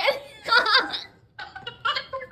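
Laughter in short, choppy bursts, breaking off briefly after about a second and then starting up again.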